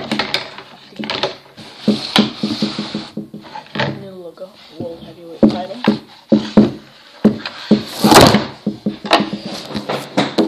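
Cardboard shipping box and boxed toy wrestling belts being handled: a run of sharp knocks and thuds, with a louder rustling scrape about eight seconds in.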